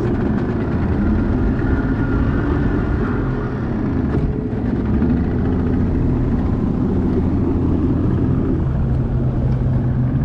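Bass boat's outboard motor running steadily as the boat goes under way, with wind rushing over the microphone.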